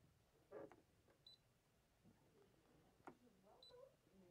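Near silence broken by two short, high beeps from a Brother ScanNCut cutting machine's touchscreen as it is tapped with a stylus, one about a second in and one near the end, with a few faint taps between.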